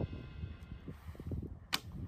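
A fiberglass Turkish-Ottoman style bow being shot: one sharp snap of the bowstring on release near the end, over a faint low rumble.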